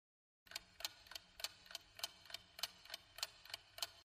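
Ticking-clock countdown sound effect: faint, even ticks, about three to four a second, starting about half a second in.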